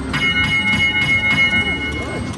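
Konami Treasure Voyage video slot machine sounding a steady, held high two-note tone with faint rapid clicks, signalling that three compass scatter symbols have landed and retriggered the free games (12 more won).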